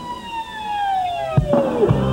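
A single whistling tone gliding steadily down in pitch over about two seconds, like a falling-whistle sound effect, with a low thump about one and a half seconds in and another near the end.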